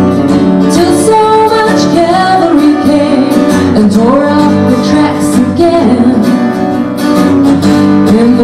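Live acoustic folk-country band playing: acoustic guitars strummed steadily under a sung melody.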